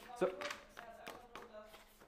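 Mostly speech: a man says one short word, then a quiet room with a faint background voice and a few light handling clicks.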